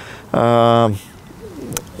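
A man's voiced hesitation sound, a single held "ehh" at one low, steady pitch lasting about half a second, as he pauses mid-answer.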